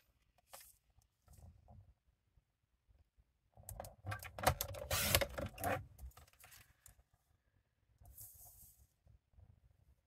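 Sliding-blade paper trimmer run along its track, cutting cardstock, a scraping sound of about two seconds in the middle. Soft taps of paper being handled come before it, and a brief rustle comes near the end.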